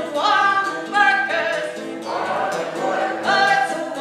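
A woman singing a folk song into a microphone while playing an acoustic guitar, with many voices singing along in long held notes.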